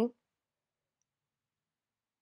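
Near silence after the tail of a spoken word at the very start.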